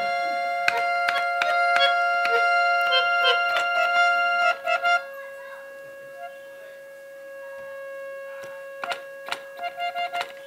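Harmonium played solo: a run of notes over a held drone for about five seconds, then it drops quieter to one sustained note, with key clicks and a few new notes near the end.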